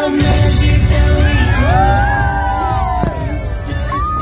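Fireworks show soundtrack music played over loudspeakers, with pyrotechnics firing under it: a heavy low rumble from the launches and a sharp bang about three seconds in.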